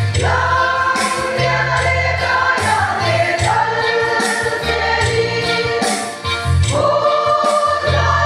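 Large women's choir singing a hymn together, with deep low sounds underneath that come and go.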